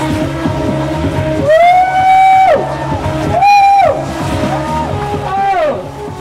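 Subaru Impreza's tyres squealing three times while it spins donuts. Each squeal is about a second long, slides up at its start, holds its pitch and drops away at its end. Music with a steady beat plays underneath.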